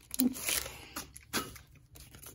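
Folded cardstock pouch being handled and pressed: a few short, dry paper scrapes and rustles.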